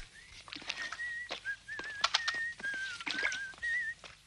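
A man whistling a tune, one wavering note line stepping between a few pitches. Scattered light knocks come from a stick being stirred in a large metal tub.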